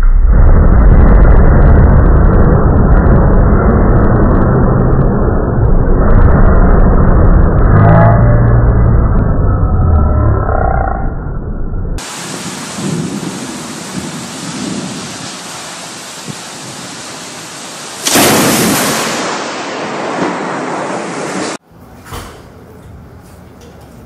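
A very loud thunderclap from a close lightning strike, starting suddenly and rolling on as a deep rumble that slowly fades over about twelve seconds. Then steady, heavy rain noise, with a sudden loud burst of noise about eighteen seconds in.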